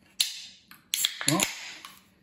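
An aluminium beer can's pull tab being cracked open: a sharp snap followed by a fizzing hiss of escaping gas, then a second snap and hiss about a second in as the tab is pushed fully open.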